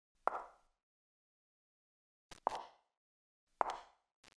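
Slow, evenly paced footsteps on a hard tiled floor: single sharp taps about a second apart with dead silence between them.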